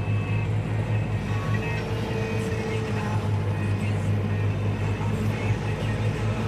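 Valtra N111 tractor running steadily at working speed while mowing, a constant deep engine drone. Music plays over it.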